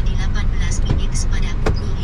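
Steady low rumble of a car's engine and road noise heard from inside the cabin, with a few short clicks.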